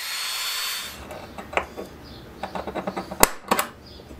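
Handheld belt file sander grinding the end of a steel chainstay tube, a steady hiss with a high whine that stops about a second in. Then a run of short clicks and knocks, the loudest a sharp click about three seconds in.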